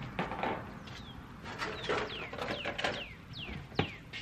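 A bird singing a run of quick down-slurred whistles, repeated several times, over short knocks and clatter of plastic containers being handled, with one sharp knock near the end.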